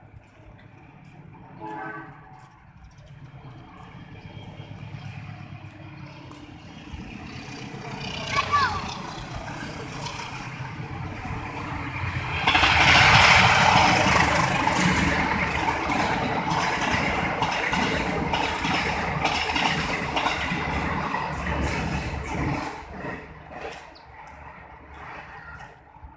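A train passing on a nearby line. A rumble builds over the first dozen seconds, turns loud and clattering about halfway through, and dies down shortly before the end.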